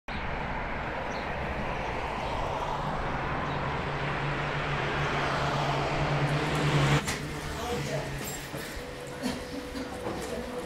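City traffic ambience, a dense noise with a low hum, swelling for about seven seconds and then cutting off suddenly. It is followed by quieter background with a few faint clicks.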